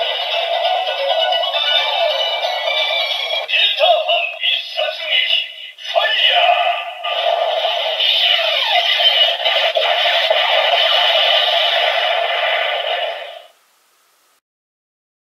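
A Kamen Rider Saber DX Seiken Swordriver toy belt plays its electronic music and synthesized voice through its small, tinny speaker, with a couple of brief breaks. It cuts off abruptly near the end.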